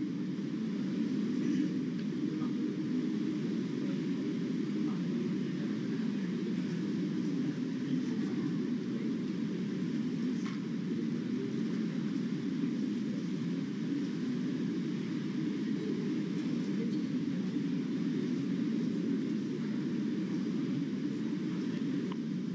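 Steady low rumble of room noise in a large chamber, with no distinct events.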